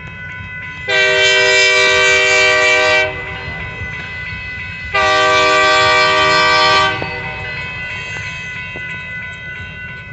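Locomotive air horn sounding two long, steady blasts at a grade crossing, each about two seconds long, the second beginning about two seconds after the first ends.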